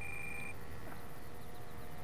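A radio-control transmitter beeping: one long, steady, high beep, following a run of short trim-step beeps, stops about half a second in. It is the sign of the trim being pushed hard over, to its end or centre point. A faint steady hum runs underneath.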